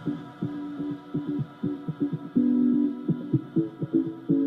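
Funky house track in a breakdown with no drums: a bass line of short, plucked notes and a few held notes, over a faint sustained synth pad.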